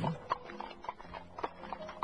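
Horse hooves clip-clopping at an unhurried, uneven pace, about three strikes a second: the sound of a horse-drawn carriage. Faint sustained tones run underneath.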